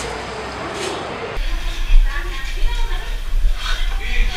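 Indistinct chatter of students' voices in a classroom. About a second and a half in, the sound changes abruptly to scattered voices over a low, uneven rumble, typical of a handheld camera's microphone.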